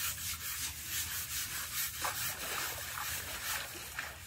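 Hand scrubbers rubbing against an elephant's hide as mahouts wash it, in repeated scrubbing strokes about two to three a second.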